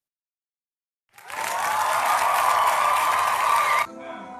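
A burst of recorded applause and cheering, starting about a second in and lasting about three seconds before it cuts off sharply.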